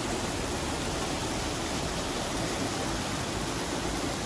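Water pouring from the outlets of a treatment basin's V-notch weir trough into a concrete channel: a steady rush of falling, churning water.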